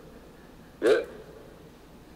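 Speech only: a man says a single short "yeah" about a second in, with faint room hiss otherwise.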